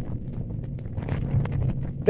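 Pause in a live speech recording played from old vinyl: a low room rumble with scattered record-surface clicks and pops.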